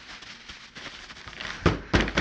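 Crinkly rustling of a plastic bag and foam packing peanuts being pushed into a cardboard box, with two dull knocks on the box near the end.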